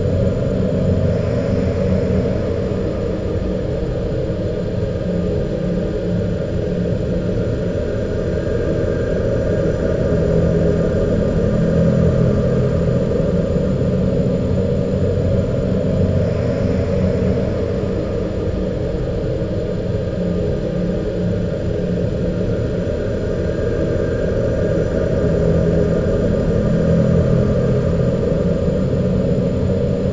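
Dark ambient music: a processed loop of an old ballroom dance-band record, heard as a dense low rumbling wash with faint higher tones, repeating about every fifteen seconds.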